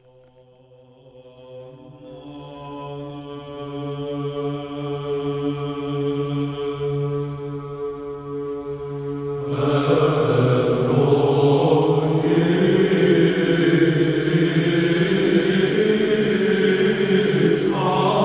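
Orthodox church chant: a steady held drone swells in from near silence, and about halfway through it grows suddenly fuller and louder as the chant proper comes in over it.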